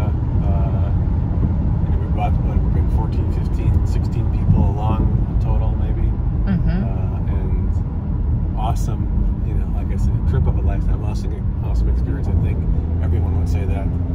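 Steady low road and engine rumble inside a moving car's cabin, with brief snatches of voice over it.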